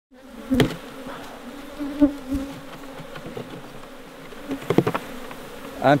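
Honeybees buzzing around an open wooden hive: a steady, wavering hum as bees fly past close by, broken by a few sharp clicks.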